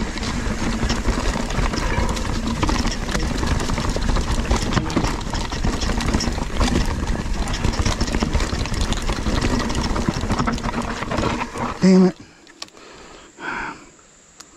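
Mountain bike riding fast down a rough dirt singletrack: tyre noise and constant rattling of chain and frame over roots and rocks, with wind rumble on the bike-mounted camera. The noise stops suddenly near the end as the rider halts.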